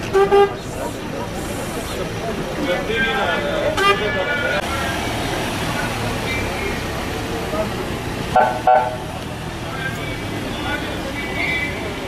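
Vehicle horn tooting twice, briefly near the start and again about eight and a half seconds in, as the funeral van pulls away with its engine running, over scattered voices.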